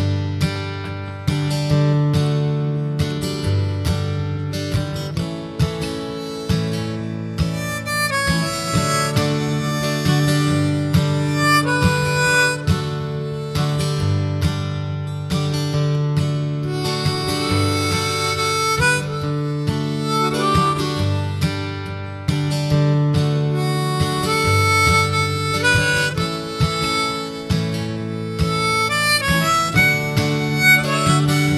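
Harmonica solo played as an instrumental break, with sustained acoustic guitar chords changing every couple of seconds underneath.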